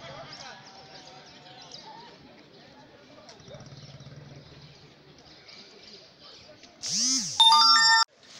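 Outdoor street ambience of background voices with a low hum that comes and goes. About seven seconds in, a loud electronic whoosh leads into a bright synthetic chime, a news edit's transition sound effect, which cuts off sharply.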